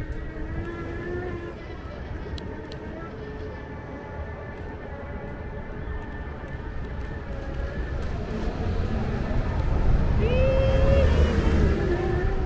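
Low wind and road rumble on a moving electric scooter's camera, with city street traffic around it. The rumble grows louder near the end, where a brief pitched tone sounds.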